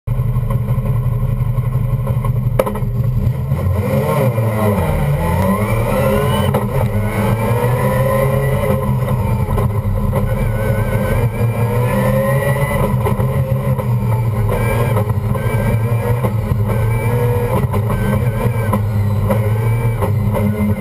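Mazda RX3's rotary engine heard loud from inside the cabin under hard driving, its pitch dipping about five seconds in and then climbing again, and rising and falling with throttle through the rest of the run.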